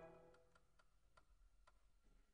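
Near silence: the last chord of a harmonium dies away in the room's reverberation, followed by a few faint clicks.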